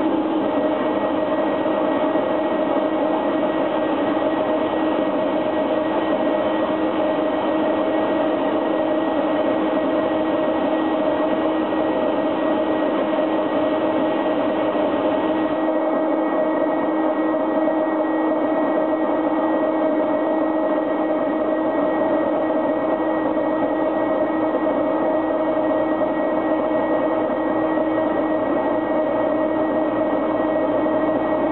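Live electronic noise music: a loud, unbroken wall of noise with sustained droning tones inside it. About halfway through, the highest hiss drops away and the sound darkens.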